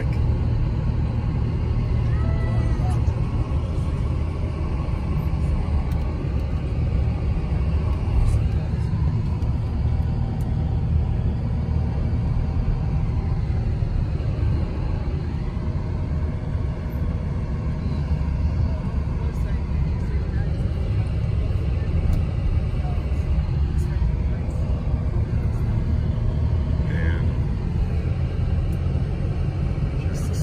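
Steady road and engine rumble inside the cabin of a moving car, a deep, even drone without breaks.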